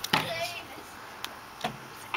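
A child's voice gives a brief call near the start, opening with a sharp knock. Two more light knocks follow in the second half.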